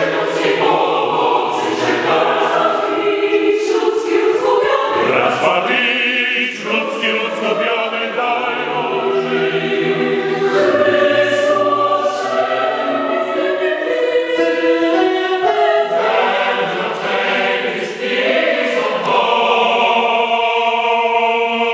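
Mixed youth choir singing a classical choral piece in several parts, with long sustained chords and many voices moving together.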